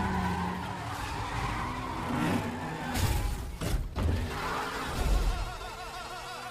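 Film trailer car-action sound: a car's engine running hard and tyres screeching in a smoky burnout, with two sharp hits around the middle.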